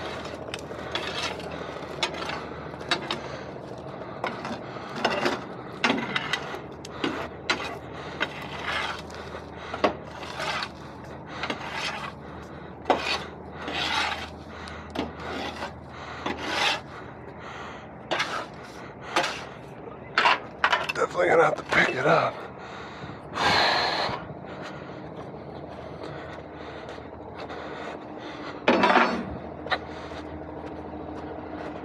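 Steel bar scraping and prying packed mud and dirt off a steel trailer deck and skid, in many irregular rasping strokes, with a pause before one last stroke near the end.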